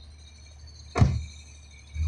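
1938 Graham's straight-six engine running quietly, heard from inside the cabin as a low steady hum. A single sharp knock comes about a second in.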